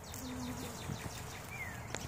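A honeybee buzzing briefly, a low steady hum that starts about a quarter second in and lasts about half a second. Faint short falling bird chirps come in the background, with a clearer one near the end.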